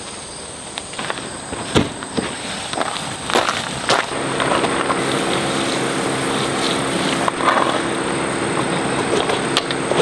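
Insects singing on one steady high note, with a few sharp knocks and clicks as things are handled on a table. About four seconds in, a louder steady rushing noise with a low hum joins in.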